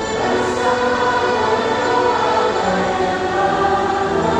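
A choir singing a hymn in long, held notes, many voices together.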